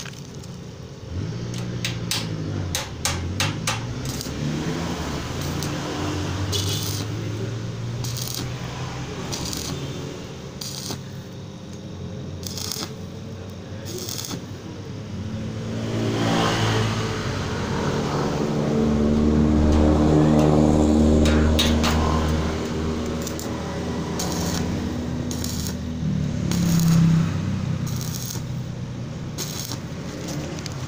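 Short metallic clinks and scrapes of a steel slide bolt being set and adjusted on a steel gate frame, over the changing hum of an engine running nearby that swells to its loudest a little past the middle.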